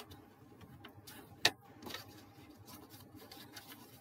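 A bone folder being run along folds in card to sharpen the creases, giving faint rubbing and scraping, with one sharp click about one and a half seconds in and a few lighter ticks.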